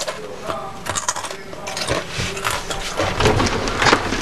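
Clicking and rattling of a door and of the camera being handled, with a louder clack near the end as a wooden folding closet door is pushed open.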